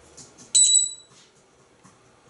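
African grey parrot giving one short, high, steady whistle, like a beep, starting about half a second in and lasting about half a second, with a few faint clicks just before it.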